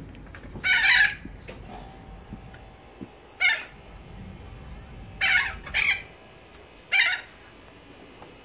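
Birds calling excitedly at feeding time: five short, loud calls, one about a second in, then spaced a second or two apart, the third and fourth close together.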